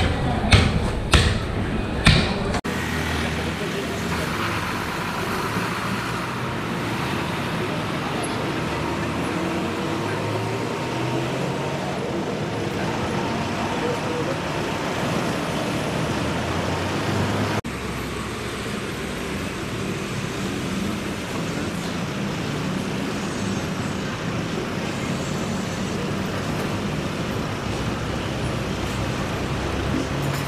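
A few sharp chopping strikes of a butcher's blade into meat on a wooden block, then steady city street traffic noise.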